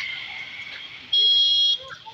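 A vehicle horn gives one short, steady, high-pitched blast of about half a second, a little past a second in, over faint background street noise.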